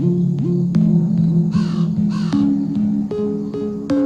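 Two crow caws about a second and a half in, over slow background music of held notes.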